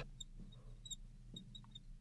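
Fluorescent marker writing on a glass lightboard: a scattering of short, faint, high-pitched squeaks as the tip drags across the glass.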